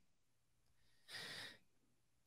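Near silence, broken once about a second in by a short, faint breath through a podcast microphone.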